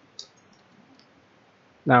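A few faint computer keyboard keystrokes, short sharp clicks, the clearest one just after the start and another about a second in.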